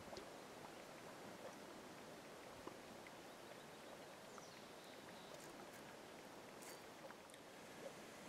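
Near silence: faint outdoor room tone with a few light, scattered ticks.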